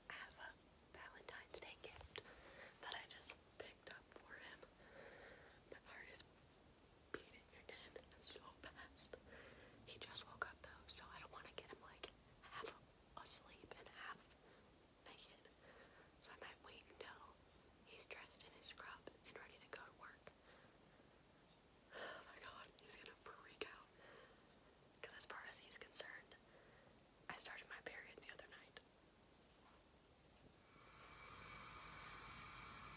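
A woman whispering quietly, in short phrases with pauses between them.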